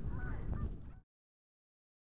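Faint outdoor background with a few faint, short calls that glide in pitch. The sound cuts off abruptly about a second in, leaving dead silence.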